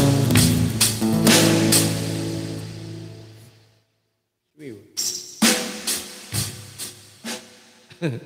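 Acoustic guitar strummed, the chords ringing out and fading to silence about four seconds in. Then sharp, percussive strums pick up again about every half second.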